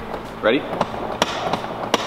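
Three sharp knocks or clicks from the racing seat's lumbar adjustment being worked from behind, the last two louder, after a short spoken 'Ready?'.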